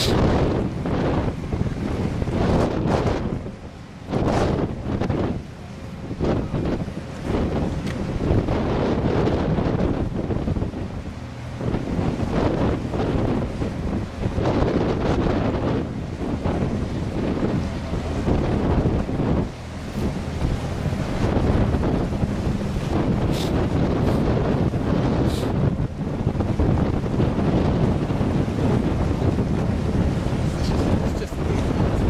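Gusty wind buffeting the microphone, over a steady low rumble from a very large container ship berthing and the wash of churned water along the quay.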